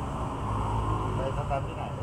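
A steady low rumble of background noise, with a woman's voice starting briefly about a second in.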